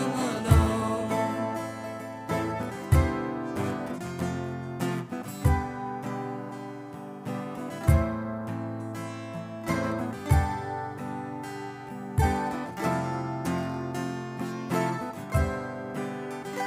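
Live folk band playing an instrumental passage: strummed acoustic guitar over sustained chords, with a deep drum hit about every two and a half seconds.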